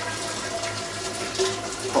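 Boiling water pouring steadily from an electric kettle into a stainless steel beer keg to clean it out.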